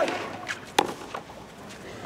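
Tennis ball being struck and bouncing on a clay court during a serve and return: a few short, sharp knocks, the loudest just under a second in.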